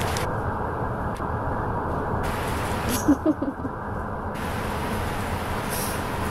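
Steady rumble of a bus heard from inside the passenger cabin: engine and road noise. A short laugh cuts in about three seconds in.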